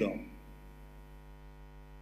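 Steady electrical mains hum in a pause between spoken phrases, with a man's last word fading out just at the start.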